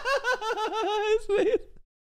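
A man laughing hard in a rapid run of high-pitched laughs, about seven a second, cut off abruptly just before the end.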